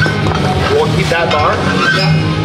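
Background rock music with a singing voice over a steady bass line.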